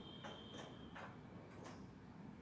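Faint, irregular mechanical ticks from a black vintage sewing machine as its handwheel is turned by hand, about five clicks over two seconds.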